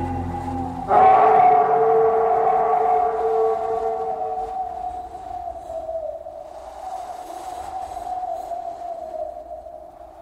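The closing of a blues-rock song: a long held, slightly wavering note comes in sharply about a second in and slowly fades away.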